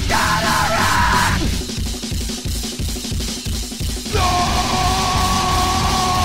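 Crossover thrash band recording: the full band plays, then about a second and a half in the guitars and voice drop out, leaving drums and bass pounding on alone. Near the end a long held note comes back in over the drums.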